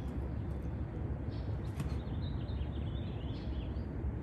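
Steady low outdoor background rumble, with faint small-bird chirps from about a second and a half in until near the end.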